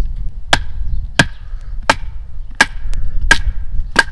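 Wooden baton hammering the spine of a Cold Steel Bowie knife to split a frozen stick on a stump. The sharp knocks come steadily, about three every two seconds, each with a brief ring.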